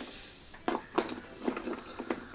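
Hard plastic parts of a Hasbro HasLab H.I.S.S. tank toy clicking as the hinged hatch on its side missile launcher is flipped up and the pod handled, giving several short sharp clicks.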